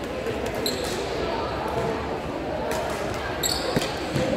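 Badminton play on an indoor court: a few sharp racket hits on the shuttlecock and short shoe squeaks on the court floor, over the chatter and echo of a large hall.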